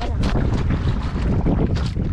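Loud, gusting wind buffeting the camera microphone in a low, uneven rumble, over open-sea noise around an outrigger canoe on choppy water.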